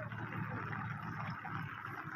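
Steady patter of rain with water running in a shallow channel, an even hiss and rumble with no single sound standing out.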